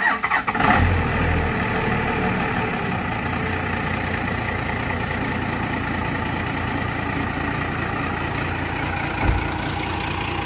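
Second-gen Dodge Ram 3500 dually's 12-valve Cummins inline-six diesel starting, catching about a second in, then settling into a steady idle. A short thump near the end.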